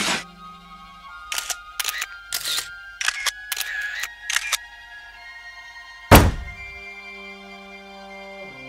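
Camera shutter clicks in a rapid series, fitting a mugshot being taken. They are followed about six seconds in by one loud heavy thud, the loudest sound, all over music with sustained held chords.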